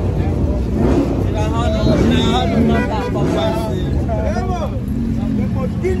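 Lamborghini Huracán's V10 running at low revs as the car rolls off, with a steady low engine note under many voices talking.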